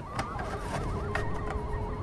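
Plastic and resin figure parts being handled and lifted apart, with a couple of light clicks, under a thin wavering high tone that warbles on through most of it.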